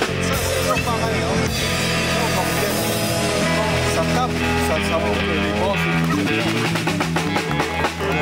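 A live rock band playing: electric guitar over a drum kit, with held notes and drum hits growing denser about halfway through.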